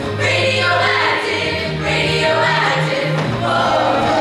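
A mixed-voice high school show choir singing in full voice, with low notes held underneath the changing melody.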